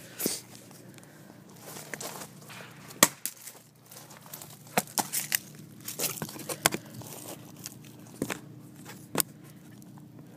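Cracked smartphone being broken apart by hand: scattered sharp cracks, clicks and crunches of plastic and glass, with one louder snap about three seconds in and a quick cluster of clicks around the middle.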